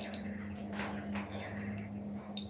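Fruit juice pouring in a thin stream from a carton into a glass mug, with soft trickling and a few light drips.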